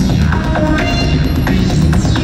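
Live rock drum solo amplified through an arena PA: drums over a throbbing low drone, with repeating stepped electronic tones.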